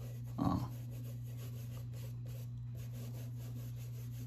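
Quiet steady low hum, with one short breath sound about half a second in.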